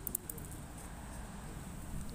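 Quiet, steady outdoor background noise: a low rumble with a few faint clicks just after the start, and no distinct source standing out.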